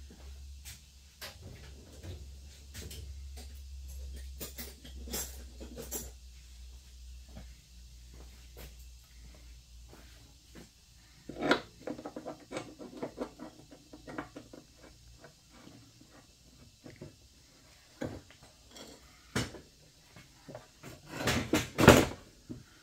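Steel adjustable wrenches clinking and clanking against the lawn tractor mower deck's steel bracket as they are fitted and levered to bend the bent bracket straight. Scattered light clicks, a sharper clank about eleven seconds in, and a cluster of loud clanks near the end.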